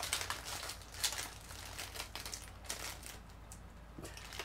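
Plastic snack bag crinkling as it is pulled open by hand, in irregular crackles that are strongest in the first second or so and thin out toward the end.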